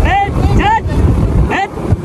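Wind buffeting the microphone on a moving motorcycle, with the bike's engine running underneath, and a man's voice calling out over it near the start and again about a second and a half in.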